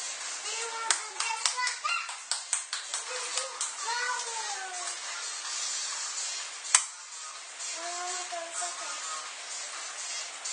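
A young girl's voice making a few short rising-and-falling vocal sounds, with a quick run of claps, about three a second, over the first few seconds. One sharp knock stands out about seven seconds in.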